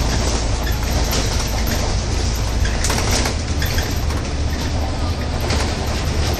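Cabin noise of a double-decker bus on the move, heard from the upper deck: a steady low engine drone under road noise, with a few brief knocks and rattles about halfway through.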